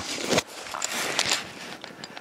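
Irregular crunching and crackling of footsteps on loose broken shale rock, mixed with rustling from the handheld camera being turned around, easing off near the end.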